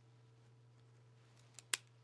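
Quiet room with a steady low hum, then a few sharp clicks near the end from a pen being handled after writing on a paper chart.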